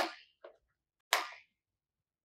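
Two sharp clicks of small plastic beads knocking on each other and on a plastic bead tray as beads are handled, the first right at the start and the second about a second later. Each fades quickly.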